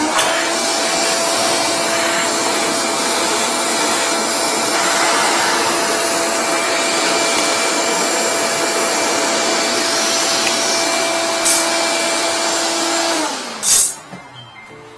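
Wet/dry vacuum running steadily with its hose held in a floor drain, sucking at the drain. Its motor is switched off about a second before the end and winds down with a falling pitch, followed by a short loud knock.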